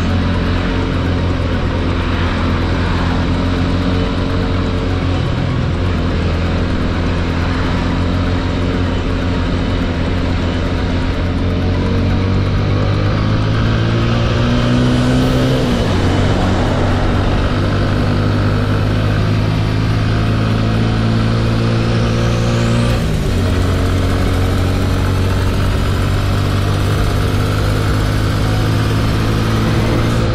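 TVS Apache 200's single-cylinder engine running steadily at road speed, heard on board. The engine note shifts pitch twice, about halfway through and again later.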